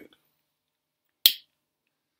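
A single sharp click from a small pocket lighter held to a pipe bowl, about a second in.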